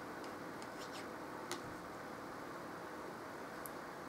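Steady low hiss with a few faint, irregular clicks from tarot cards being handled and felt between the fingers.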